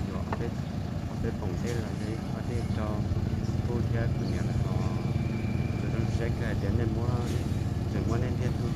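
A man talking over the steady low hum of a small motorcycle engine idling.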